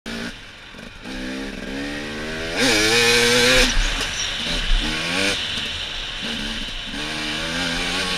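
Dirt bike engine ridden on a trail, its revs rising and falling with the throttle. A hard burst of throttle comes a few seconds in and holds high for about a second.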